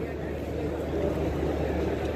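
Steady background noise of an open cricket stadium, a low rumble with an even hiss and no distinct event.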